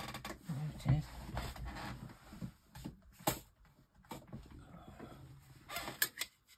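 Craft supplies being moved and handled on a desk while a stamp is searched for: rustling, with sharp clicks about three seconds in and again near the end.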